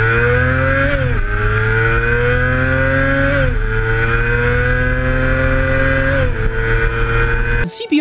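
Honda CBR250RR's 250cc inline-four engine revving high under hard acceleration. Its pitch climbs steadily through each gear, with an upshift about one second in, another about three and a half seconds in and a third about six seconds in, each dropping the pitch before it climbs again. It cuts off abruptly just before the end.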